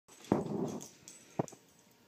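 A dog's short, rough vocal sound while playing with a cat, lasting about half a second, followed about a second later by two quick sharp knocks.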